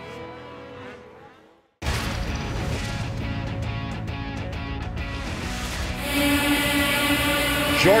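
Broadcast music fades out and cuts to a brief silence, then a sponsor-bumper sting starts abruptly. From about six seconds in, a pack of two-stroke snocross racing snowmobiles revs at the start line, louder and with a steady engine pitch.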